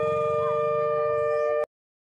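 Long, steady blown-horn notes at two overlapping pitches, over a low rhythmic rumble. The sound cuts off abruptly about one and a half seconds in.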